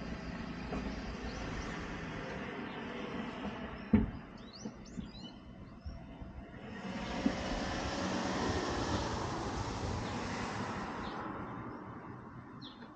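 Street traffic: a vehicle goes by and fades, a sharp knock sounds about four seconds in, small birds chirp briefly in the lull, then another vehicle swells up and passes, dying away near the end.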